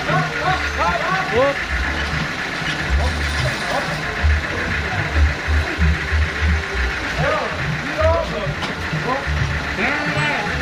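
A homemade band sawmill running steadily, with music with a pulsing bass line and a voice over it.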